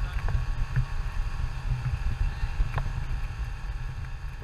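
Wind buffeting the microphone over the steady drone of a 9.9 hp Mercury outboard running the boat at speed, with a few short sharp ticks.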